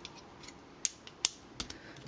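Hard plastic parts of a transforming robot figure being handled, with a few small clicks as a fist piece is pushed into its arm. Two sharper clicks come about a second in.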